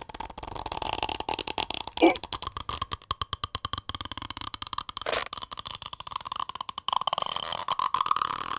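Cartoon sucking sound effect: a rapid stuttering run of slurps, about ten a second, as a character sucks the water out of a plastic bag. Short squeaky vocal noises break in about two and five seconds in.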